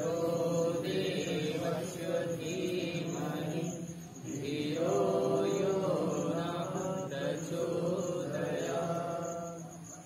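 A group of voices chanting a mantra together in long, slow sung phrases, with a short break about four seconds in.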